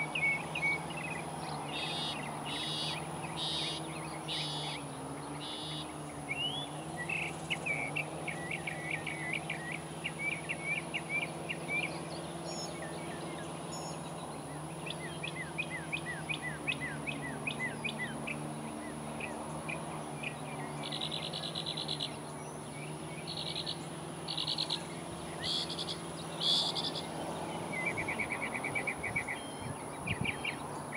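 Outdoor ambience of several birds singing and calling, with quick runs of chirping notes and a few buzzy trills, over a steady low hum.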